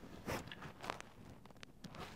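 A few faint, brief rustles and soft clicks, a handful over two seconds, with quiet room tone between them.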